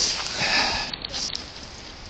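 A short sniff close to the microphone, with rustling as the chest-worn camera moves.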